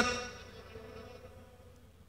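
Pause in an amplified speech: the last word rings on through the public-address loudspeakers and fades away over about a second, leaving a faint low hum.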